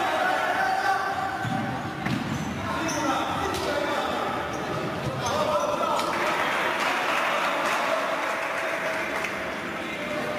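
Players' shouts and voices echoing in an indoor sports hall, with several short knocks of a futsal ball being kicked and bouncing on the hard court.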